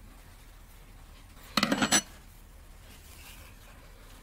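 A brief metallic clatter, under half a second long, about one and a half seconds in: an aluminium crochet hook being set down on the table. The rest is quiet room tone.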